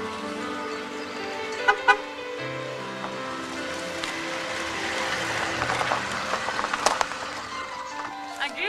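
Background music over a car coming slowly up a dirt track and pulling up, with a growing hiss of tyres on the ground through the second half. Two short, sharp sounds come about two seconds in.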